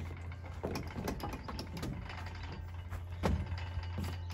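Footsteps and scattered knocks on a metal playground platform, with a louder thump about three seconds in, over a steady low rumble.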